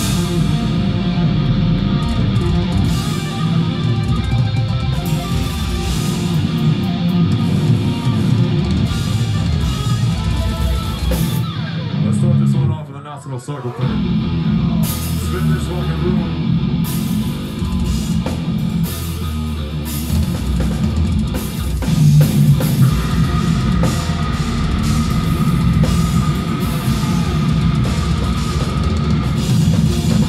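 Death metal band playing live: distorted electric guitars and a drum kit, kicking in suddenly at the start. The music drops out briefly about 13 seconds in, then comes back at full level.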